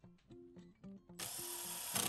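Cordless drill running for about a second, starting a little past the middle, as it drives into the corner joint of a pine face frame. Background music plays throughout.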